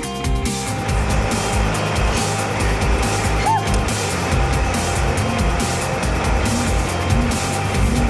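Background music with a steady beat, joined about a second in by the running engine and driving noise of a Jeep moving over snow.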